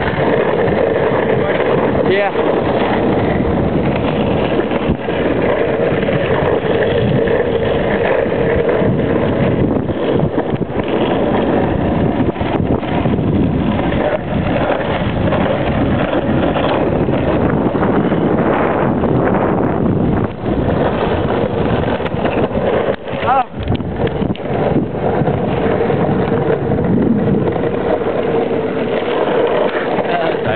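Skateboard wheels rolling steadily over pavement: a continuous loud rolling rumble with a steady hum, with wind on the microphone. A few brief knocks come about two-thirds of the way through.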